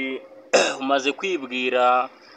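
A man's voice holding steady pitches that step up and down, like singing or humming, with a short rough throat-clearing sound about half a second in.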